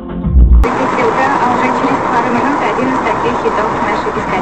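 Bass-heavy music with a beat cuts off suddenly under a second in. It gives way to the steady road and engine noise of a moving car heard from inside the cabin, with music and a voice playing over it.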